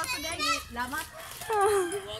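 Voices talking, some of them high-pitched; only speech is heard.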